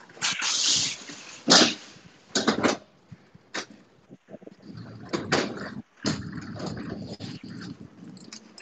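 Rustling and knocks of a hand-held phone rubbing against a hoodie and being moved about, in irregular bursts with a few sharp clicks.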